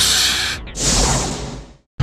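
Two loud, hissing breaths from a man, one at the start and a second about a second in, which fades away.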